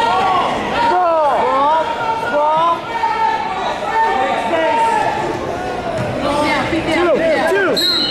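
Wrestling shoes squeaking repeatedly on the mat as two wrestlers scramble and go to the mat, over a background of crowd voices in a gym.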